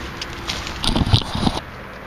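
Spade cutting into grassy pasture turf and levering up a plug of soil: about a second of crunching and tearing of roots and earth in the middle.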